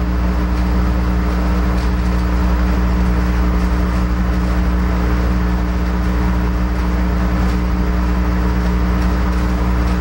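A steady, loud machine drone with a low, constant hum that does not change for the whole stretch.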